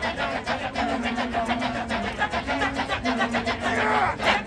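Kecak chorus of many men chanting the rapid interlocking "cak-cak-cak" rhythm, with a low held sung line under it that steps slightly in pitch.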